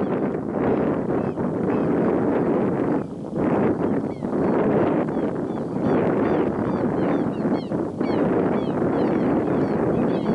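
Wind buffeting the microphone: a loud, steady rushing noise that dips briefly about three seconds in, with faint high chirps running over it.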